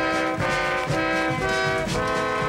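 Brass band music, with horns playing a melody in held notes that change about twice a second.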